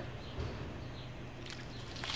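A low steady hum with a few faint clicks.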